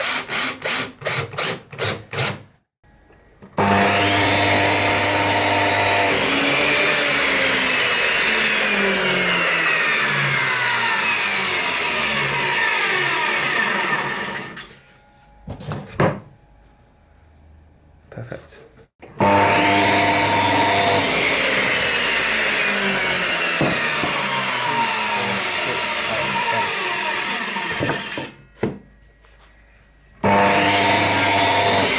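A cordless drill gives a quick rattle of clicks as it drives into a stop block on the saw fence, then a mitre saw runs twice, about 3 s and 19 s in, for roughly ten seconds each, cutting MDF shelf blanks to length, its motor pitch falling as the blade winds down after each cut.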